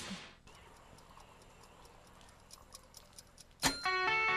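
A short burst of music cuts off at the start, then a toaster's timer ticks faintly and rapidly for about three seconds. A sharp click, the toast popping up, comes near the end and is followed at once by bright, plucked-sounding notes of music.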